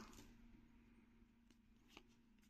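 Near silence: room tone with a faint steady hum, and one faint tick near the end.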